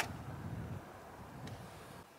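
A single sharp click of a light switch being flipped, the switch for the van's roof-mounted exterior LED light, followed by faint low background noise.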